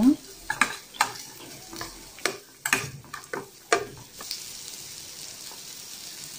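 Sliced onions, curry leaves and dried red chillies sizzling in oil in a stainless steel pan while a spatula stirs them, clicking and scraping against the pan about ten times in the first four seconds. After that only a steady, faint sizzle remains.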